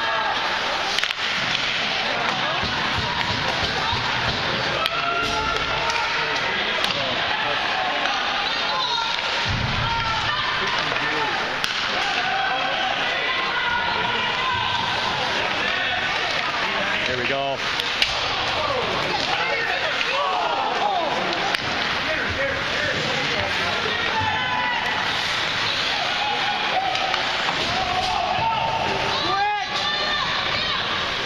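Spectators at an ice hockey game talking over one another in a steady crowd chatter, with a few sharp knocks from the play on the ice, the loudest about eighteen seconds in.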